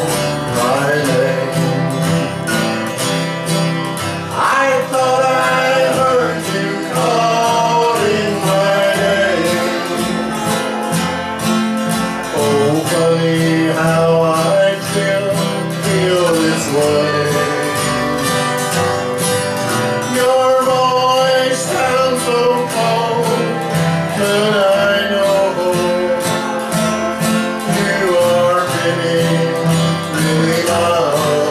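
Live country band music led by guitar, with a melody line that slides up and down in pitch over a steady bass.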